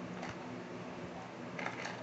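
Quiet room tone with a steady low hum, broken by two faint short noises, one near the start and one near the end.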